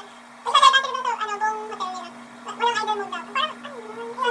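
A woman's high-pitched, wordless vocal sounds sliding up and down in pitch, in several bursts, over a steady low hum.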